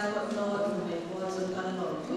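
A woman speaking into a microphone at a lectern.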